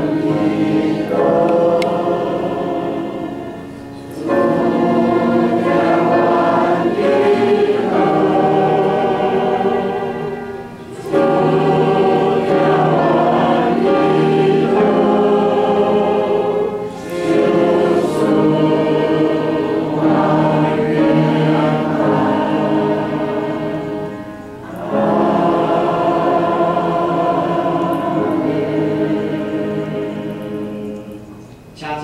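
A church congregation singing a hymn together in phrases of about six to seven seconds, with short breath pauses between them.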